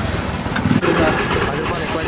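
A motor vehicle engine running in street traffic, mixed with background voices.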